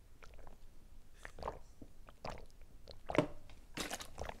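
Close-up mouth sounds of a person drinking from a plastic water bottle: scattered gulps, swallows and lip smacks, the loudest about three seconds in and near the end.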